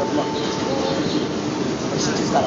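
New York City subway car running: a steady rush and rumble of the train on the track, heard from inside the car, with a faint thin whine over it.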